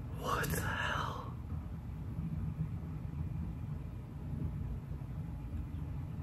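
A brief whisper lasting about a second near the start, over a low steady rumble that carries on throughout.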